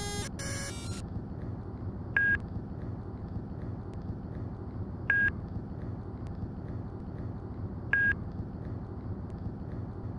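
A short burst of stuttering glitch noise, then a single-pitched electronic beep that repeats about every three seconds over a steady low hum.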